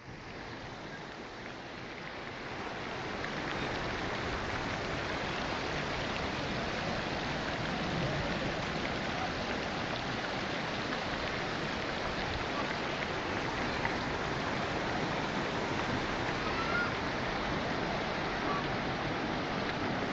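Muddy floodwater rushing across open ground in a steady wash of noise, fading up over the first three seconds or so.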